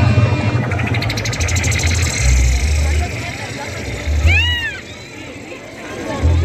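Live band at a loud concert: heavy bass notes held in blocks with drums, and a crowd cheering that swells in the first few seconds. About four seconds in a single voice whoops, rising and falling, and the music drops back for a moment near the end.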